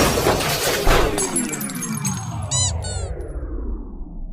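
Soundtrack sound effect of a train breaking down: a crash as the music cuts off, then a long falling whine of many pitches sliding down together, like a machine powering down, with a few short high chirps about two and a half seconds in.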